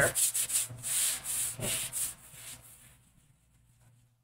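Palms rubbing over a sticky self-adhesive vinyl silk-screen stencil, dulling its tack with a light coat of lint: a run of brushing strokes that fades out about two and a half seconds in.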